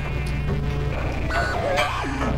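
A steady low buzzing hum with no change in pitch.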